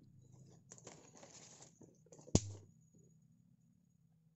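A rustling scrape of about a second, followed by a single sharp knock about two and a half seconds in, over a low steady hum.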